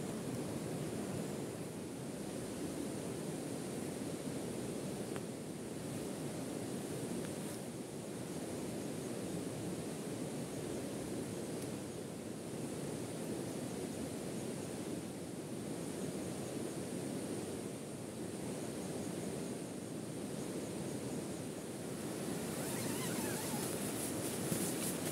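Steady rushing water noise, even throughout, with no single event standing out; it grows slightly brighter and louder near the end.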